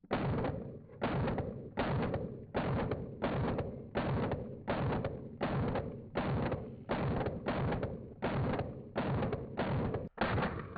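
Grand Power Stribog SP9A3S, a 9 mm roller-delayed carbine, fired semi-automatically at a steady, deliberate pace of about one shot every 0.7 s. There are roughly fourteen shots, each with a short echo.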